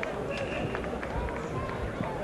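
Indistinct chatter of several voices at once, with a few faint ticks.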